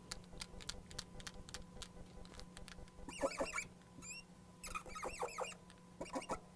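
Felt-tip marker squeaking on a glass lightboard as a line is drawn, in two short squeaky strokes in the second half, after a few faint ticks.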